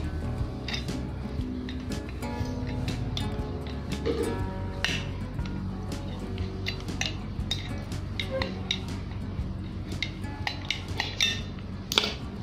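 Tin snips cutting galvanized sheet steel: a series of irregular sharp clicks and metallic clinks as the blades bite through, over steady background music.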